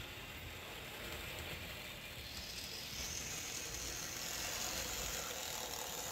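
Model Southern Pacific F-unit diesel locomotive running along the track. Its small motor and gears make a steady mechanical whir that grows slowly louder as it approaches, with a higher whine joining about three seconds in.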